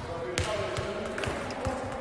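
A football being kicked and bouncing on the floor of a large indoor sports hall: a sharp click followed by several dull thuds, with voices in the background.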